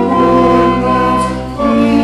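A hymn sung over sustained chords, with long held notes. The chord changes after a brief dip about a second and a half in.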